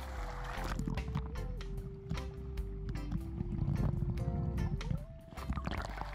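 Background music: a slow melody of long held notes over a repeating low bass. Underneath it are muffled water noises and a low rumble as the phone, sealed in its waterproof pouch, dips in and out of the pool surface.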